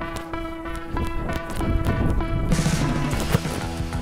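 Background music: held tones with light percussion.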